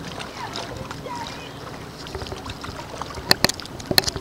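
Steady outdoor noise on a small boat: water moving and wind, with faint distant sounds. Two sharp knocks about three seconds in.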